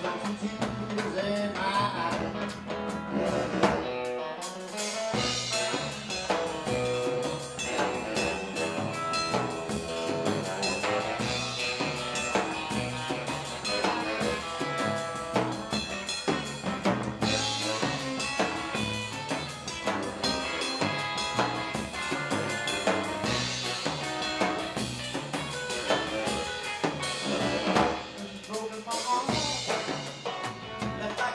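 Live 1950s-style blues and R&B band playing an instrumental passage: saxophone lead over upright double bass, electric guitar and a drum kit keeping a steady beat.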